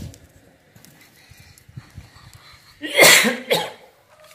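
A person coughing loudly twice in quick succession about three seconds in.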